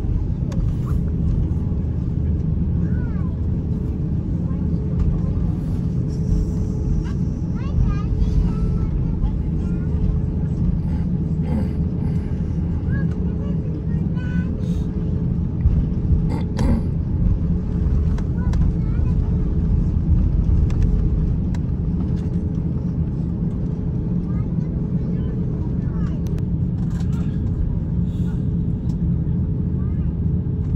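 Steady low rumble of an airliner cabin with a faint constant hum, and indistinct voices and a few small clicks in the background.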